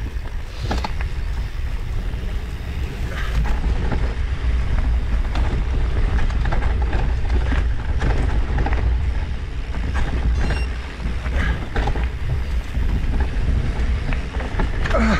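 Wind buffeting the microphone as a rough low rumble while a bicycle rides a bumpy dirt trail. Frequent short clicks and rattles come from the bike and its tyres over roots and leaf litter.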